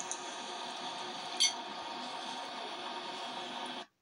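Steady background hiss and hum with one short, sharp click about a second and a half in. The sound cuts off abruptly just before the end.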